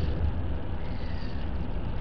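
Steady low background rumble with a faint hiss, and no distinct event.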